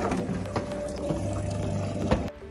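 Automatic orange juicer machine running with a steady motor hum, with a short laugh about half a second in.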